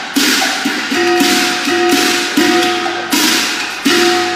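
Cantonese opera accompaniment between sung lines: a run of ringing percussion strikes, about every two-thirds of a second, over a held instrumental note.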